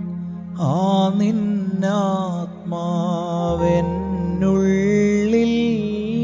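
A man singing a slow Malayalam Christian devotional song over sustained keyboard chords. The voice comes in about half a second in, with long wavering held notes.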